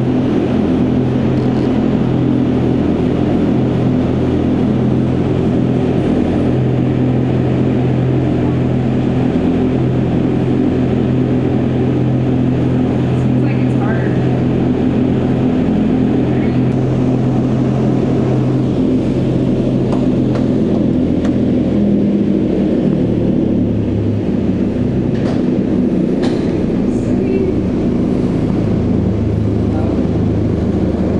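Vertical wind tunnel's fans and rushing airflow, a loud steady roar with a low droning hum; the hum drops lower about two-thirds of the way in.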